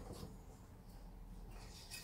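Faint, soft sounds of buttermilk sugar cookie batter being stirred by hand in a glass mixing bowl.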